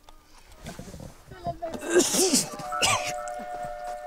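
A man gagging and retching on a mouthful of raw goat's testicle: throaty, strained vocal heaves, loudest about halfway through. A held music chord comes in about two-thirds of the way through.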